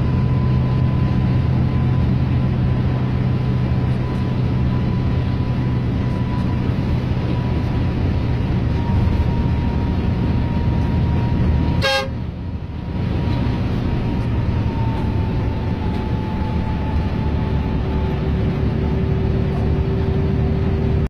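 Coach engine running steadily on the highway, heard from inside the driver's cab, with a thin steady high tone held over it. A click and a brief drop in level come about twelve seconds in.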